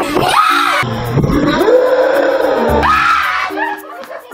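A person screaming, loud, with the pitch gliding up and down, for the first two and a half seconds or so, over background music.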